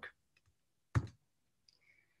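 A single short, sharp click about a second in, against quiet room tone.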